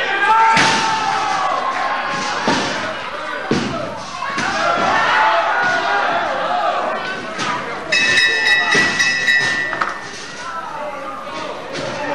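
Wrestlers' bodies slamming onto the ring canvas in several separate thuds, under continual crowd voices in a reverberant hall. A steady high-pitched tone sounds for about two seconds near the end.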